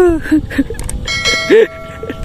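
A bright electronic bell chime, the notification-bell 'ding' of a subscribe-button animation, starting about a second in and ringing on steadily, with a few short vocal sounds around it.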